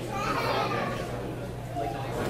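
Indistinct chatter of young voices, with no music playing.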